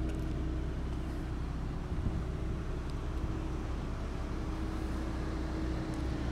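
2015 Volkswagen CC's 2.0-litre turbocharged four-cylinder engine idling: a steady low hum with a faint constant tone.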